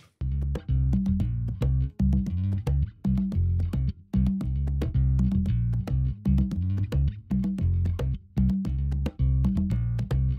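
Mix playback of an electric bass guitar line changing pitch under a steady rhythm of sharp conga and drum hits. The bass is sidechained by a Trackspacer plugin so that it dips under the conga in its slap range around 180–200 Hz.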